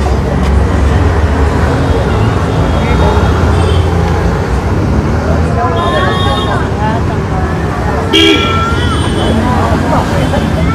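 Street traffic with a steady low rumble of engines and several short vehicle horn toots, the loudest a little after eight seconds in; background voices.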